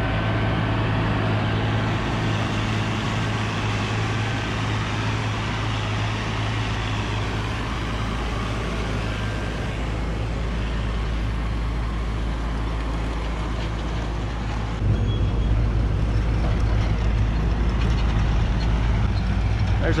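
Diesel farm tractor engines running steadily at a silage bagger. The hum grows louder about fifteen seconds in.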